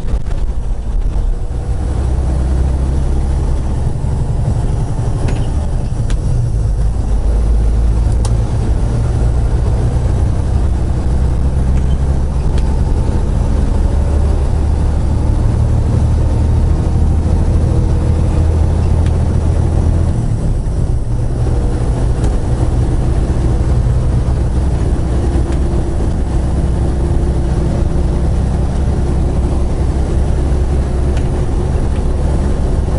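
Semi truck's diesel engine and road noise heard from inside the cab: a loud, steady low drone as the truck drives at highway speed. The drone shifts in pitch a few times and briefly drops about two-thirds of the way through.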